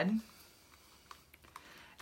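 A few faint, light clicks a little past the middle, from a plastic ink pad case being handled.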